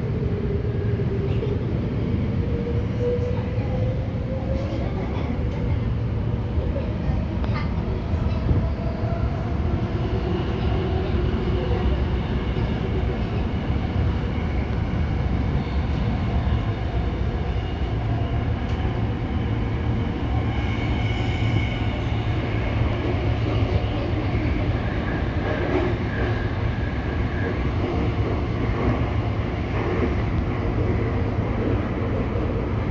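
Tokyo Metro Namboku Line subway train running through a tunnel, heard from inside the car: a steady low rumble with a motor whine that rises in pitch over the first few seconds, and thinner high tones joining in around the middle.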